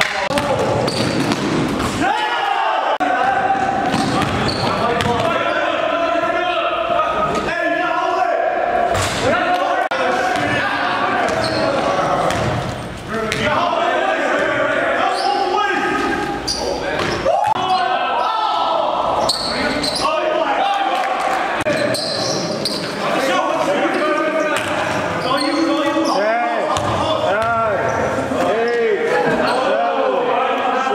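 Game sound of a basketball being dribbled and bounced on a gym floor, with players' voices calling out, echoing in a large hall.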